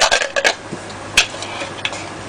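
Kitchenware clinking and knocking a few times, the sharpest knock about a second in.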